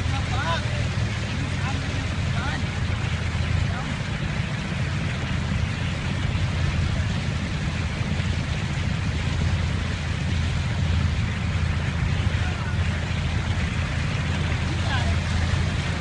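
A boat's engine running steadily under way, a constant low drone with a hiss of water and air over it.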